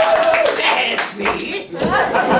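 Hands clapping, preceded by a voice holding a wavering note at the start.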